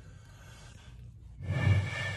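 Quiet car-cabin hum, then about one and a half seconds in a bottle with some liquid left in it is blown across its mouth, giving a steady hooting tone. The pitch of the tone depends on how much liquid is in the bottle.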